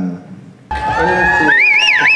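A soundtrack plays loudly through theatre speakers, starting abruptly about two-thirds of a second in: music with a gliding, voice-like melodic line. It follows a brief spoken fragment.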